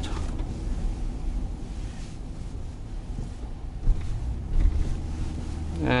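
Steady low rumble of engine and road noise heard from inside a vehicle's cabin while driving.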